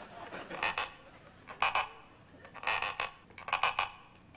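Short sharp clicks in four quick clusters, about one cluster a second.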